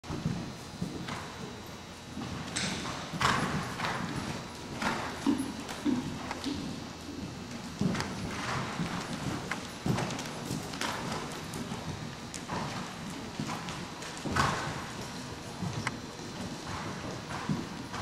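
Horse cantering on a dirt arena footing: hoofbeats in an uneven rhythm, a few landing louder than the rest.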